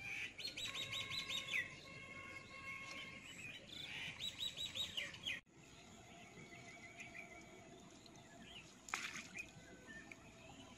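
Birds singing and calling: twice a quick run of repeated high notes, over steadier whistled calls. About halfway through the sound breaks off suddenly, and only fainter, scattered calls follow.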